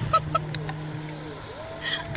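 Young woman laughing in two short bursts, then a drawn-out vocal sound near the end, over a steady low hum.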